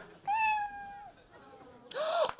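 A cat meowing: one drawn-out meow, level in pitch and dropping off at the end, about a quarter second in.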